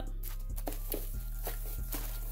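Soft background music, with a few faint rustles and light taps of crinkle-cut paper shred being handled in a cardboard box.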